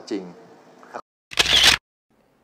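A man's last spoken word, then a short silence and a loud camera-shutter-like editing sound effect about half a second long, about a second and a half in, marking the cut to a title card.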